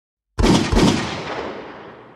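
A loud, sudden blast-like sound effect opening an electronic dance track: two hits about a third of a second apart, then a noisy tail that fades away over about a second and a half.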